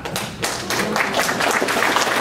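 Audience applauding in a large hall, the claps thickening about half a second in.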